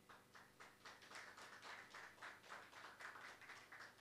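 Faint applause from a small group of people clapping, about four to five claps a second, starting suddenly and dying away after about four seconds.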